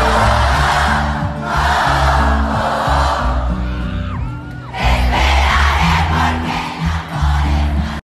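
Live pop band music with a steady bass line, under a loud crowd cheering and shouting.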